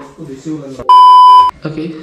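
A single loud, steady, high-pitched electronic beep about half a second long, starting and stopping abruptly about a second in: a bleep tone edited into the soundtrack, of the kind laid over a word to blank it out.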